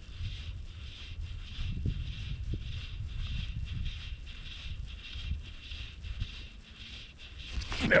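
Wind buffeting the microphone in an uneven low rumble, with a faint hiss over it.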